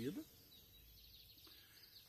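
Near silence: faint background ambience after the last syllable of a man's word at the very start.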